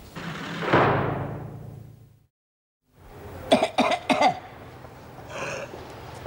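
An elderly woman coughing in harsh fits, a cluster of sharp coughs about three and a half seconds in and another rasping cough near five seconds. It is preceded by a short swelling and fading rush of sound that cuts off into a brief dead silence.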